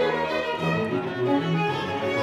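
String section of a chamber orchestra (violins, violas, cellos, double bass) playing sustained chords over a low cello and bass line that moves to a new note a few times.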